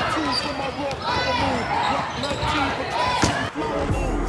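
Basketballs bouncing with a few sharp thuds on a gym floor, amid the chatter of a group of students.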